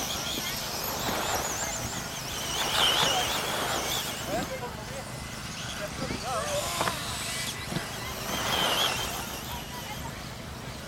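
Electric two-wheel-drive RC off-road buggies racing, their motors and gears whining in a high, wavering pitch that rises and falls with the throttle. The whine swells as cars pass, about a second in, around three seconds in and again near the end.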